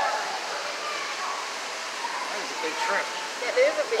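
Steady hiss of a busy indoor hall, with the faint murmur of other visitors' voices.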